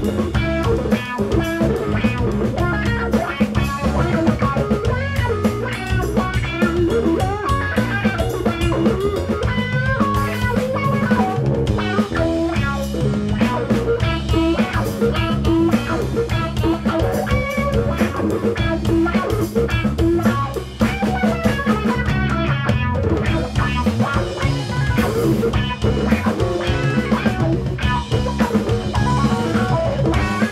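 Live blues trio playing an instrumental passage with no singing: a Stratocaster-style electric guitar over electric bass and drum kit.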